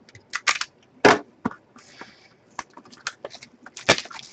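Clear plastic shrink wrap being cut with a box cutter and torn off a sealed box of hockey cards: an irregular run of sharp crinkles and crackles.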